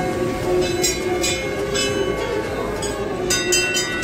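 Metal temple bells struck again and again at irregular moments, each strike ringing on, over the murmur of a crowd of voices.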